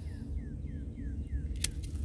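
A single sharp click of hand pruners about a second and a half in, over a steady low rumble and a series of faint high chirps, each falling in pitch, about three a second.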